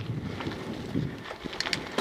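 Mountain bike rolling fast down a dirt trail, with wind buffeting the microphone and tyres rumbling over the ground. Sharp rattles and knocks from the bike over bumps come in the second half.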